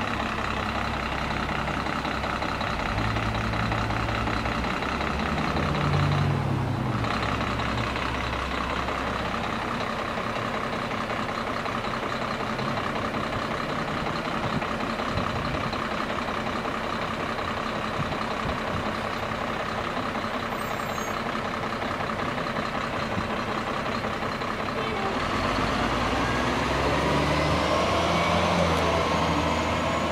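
SamTrans transit bus running steadily at the curb, then accelerating away near the end, its engine and drivetrain whine rising in pitch.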